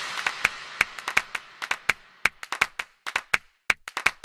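A crowd clapping: a dense burst of applause that thins out within a couple of seconds into scattered single claps.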